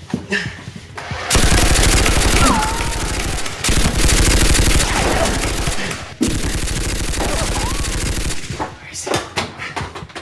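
Rapid automatic gunfire in three long bursts of about two seconds each, with a short cry over the first and the last burst.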